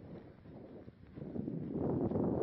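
Wind buffeting the microphone, a rumbling noise that grows louder about a second and a half in.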